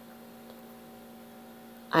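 Steady, faint electrical hum: a constant low tone with fainter overtones over light hiss. This is background noise of the voice recording, heard in a pause between words.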